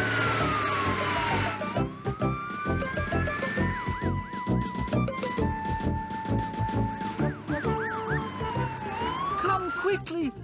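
Fire engine siren wailing in slow falling and rising sweeps, twice breaking into a quick yelp, over background music with a steady beat.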